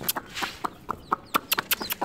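Baby chicks peeping: a string of short, sharp cheeps at an irregular pace, about four a second.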